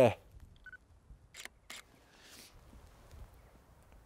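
Camera shutter taking a quarter-second exposure: two sharp clicks about a third of a second apart as the shutter opens and closes, after a short faint beep.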